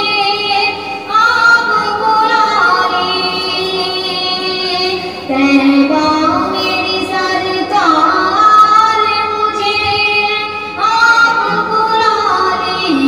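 A woman's voice singing a naat, an Urdu devotional poem in praise of the Prophet, in long, held, melodic phrases that slide between notes.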